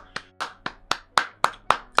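One person clapping their hands, a steady run of about ten claps at roughly five a second, the claps growing louder in the second half.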